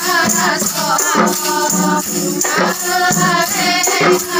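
A women's group singing a nasyid song together, accompanied by rebana frame drums struck in rhythm.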